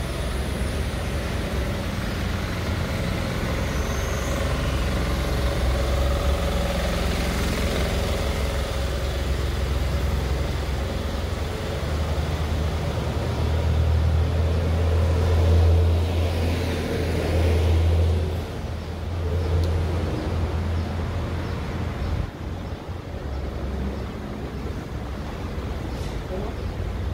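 Road traffic running along a multi-lane city street: a continuous engine and tyre rumble whose low end swells and is loudest between about 14 and 18 seconds in, easing off after that.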